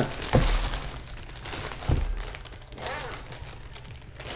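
Clear plastic zipper bag crinkling as it is handled, with a couple of sharper crackles, about a third of a second in and again about two seconds in.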